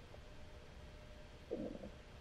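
Quiet room tone with a faint steady hum, and one brief low sound about one and a half seconds in.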